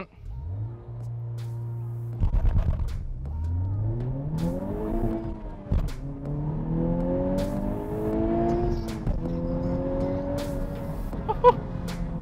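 A 2021 Honda Civic Type R's 2-litre turbocharged four-cylinder, heard from inside the cabin, held at steady launch revs before the clutch drops about two seconds in. The engine then pulls up through the revs in first gear, shifts up near the middle and pulls up again, with another upshift about nine seconds in before it pulls on.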